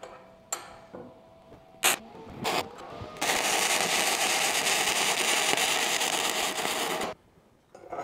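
A few light knocks, then about four seconds of self-shielded flux-core MIG welding: the arc running a test bead with a steady, dense crackle that stops abruptly when the trigger is released near the end.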